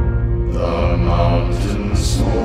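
Background music with sustained low notes. A rushing swell comes in about half a second in, and two short bright hits sound near the end.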